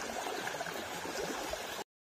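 A small woodland brook running and trickling over rocks in a steady rush, cut off abruptly near the end.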